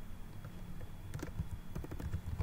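Computer keyboard typing: a short run of separate keystrokes, most of them in the second half, as a variable name is typed in.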